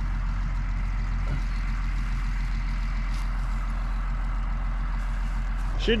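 A tractor engine idling steadily, a low, even hum that does not change.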